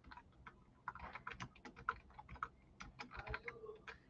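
Computer keyboard typing: a faint, quick run of key clicks, a few at first and then dense from about a second in.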